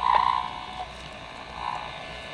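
A portable EMG signal amplifier switched on, its speaker giving a buzzing tone for about the first second, then a steady electrical hum and hiss.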